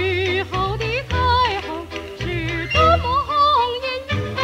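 A 1940s Shanghai popular song recording: a melody with a strong, wavering vibrato over steady low bass notes.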